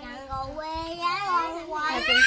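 A young child's voice in long, drawn-out wavering tones, growing louder toward the end.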